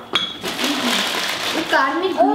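Small pieces poured from a plastic bag into a small glass bowl: a click, then a steady rattling hiss lasting about a second.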